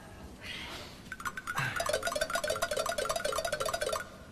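Short comic music cue: a fast run of quickly repeated, wavering notes that starts about a second in.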